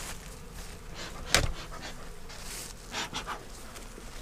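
Bee smoker's bellows puffing smoke in a few short, breathy puffs in the second half, after a single sharp knock about a second and a half in.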